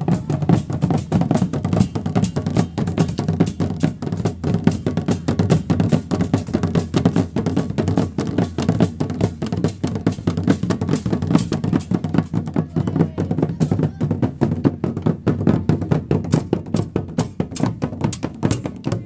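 Several hand-held marching drums beaten with sticks by schoolchildren, playing a fast, continuous marching beat of many strikes a second.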